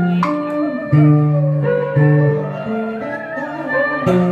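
Electric guitar playing a slow traditional Vietnamese melody: single plucked notes, each held for about half a second to a second, several of them bent and wavering in pitch.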